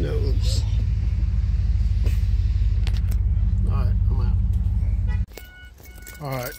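Vehicle engine idling with a steady low rumble that stops abruptly about five seconds in as the ignition is switched off. A dashboard warning chime starts beeping right after.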